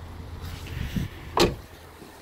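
The front door of a 2018 Volkswagen Polo being swung shut and closing with one solid thud about a second and a half in, after a softer low thump just before.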